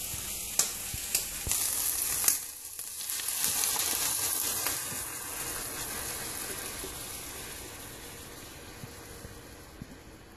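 Bacon and onions sizzling in a hot frying pan, with a few sharp clicks in the first two and a half seconds. The sizzle swells briefly a few seconds in, then fades steadily as thickened cream is poured over the bacon and onions.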